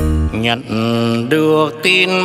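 Bolero song performed live: a male voice singing long, wavering notes with vibrato over a band of electric guitar, bass and keyboard.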